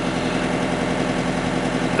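Hire river cruiser's inboard diesel engine running steadily at slow cruising speed, a constant low hum with no change in pitch.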